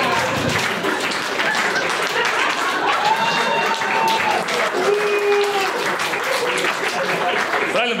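A small audience laughing and applauding, with scattered voices over the clapping.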